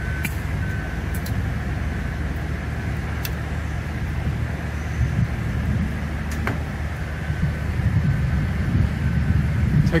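Steady low rumble of background machinery or traffic, with a few light clicks.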